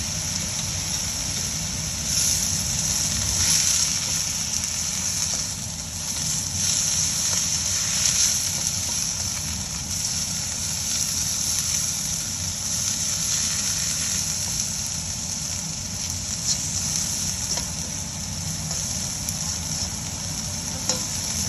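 Chopped choy sum greens sizzling as they are stir-fried in a wok, with a steady hiss that swells a few times as the spatula turns them and a low hum underneath.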